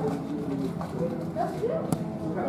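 Indistinct chatter of people talking nearby, with a single sharp click near the end.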